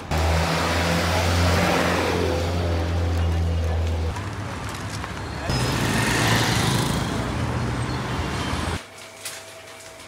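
Street traffic: car engines running nearby, with a steady low engine hum over a loud wash of road noise. The sound drops away suddenly near the end to quiet room tone.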